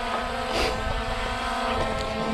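Small quadcopter drone flying close by, its propellers giving a steady hum of several tones at once. A short rush of noise about half a second in.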